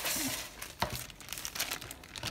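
A thin clear plastic bag crinkling as it is picked up and handled, with a few sharp crackles about a second in.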